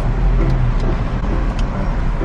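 Steady low rumble of a car's running engine heard inside the cabin.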